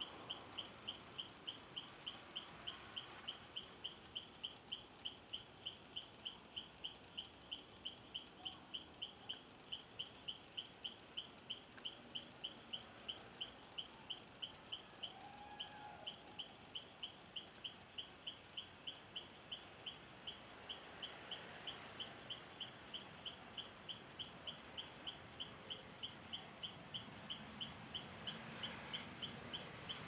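Night insects: a steady high whine with an even chirp about two or three times a second. Near the end, jet engine noise of the Bombardier Challenger 604 swells in as it comes down the runway.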